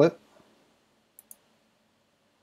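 Two quick, light clicks of a computer mouse button, about a tenth of a second apart, a little over a second in.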